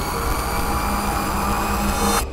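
A steady, jet-like rushing drone with several held tones, a produced sound effect in the soundtrack of an animated promo.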